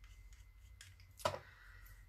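Small craft items being handled on a desk: a small alcohol ink bottle and a felt-pad blending tool. There are a few faint ticks and one short, sharp click a little past the middle.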